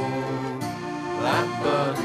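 Folk music recording in a passage without lyrics: held notes under a melody that slides upward in pitch about a second and a half in.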